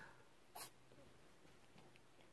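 Near silence: room tone, with one short, soft hiss about half a second in.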